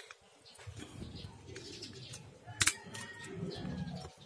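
Metal clicks and scrapes as a clutch spring is levered onto the shoes of a scooter centrifugal clutch with a screwdriver, with one sharp click about two and a half seconds in. A bird calls faintly in the background.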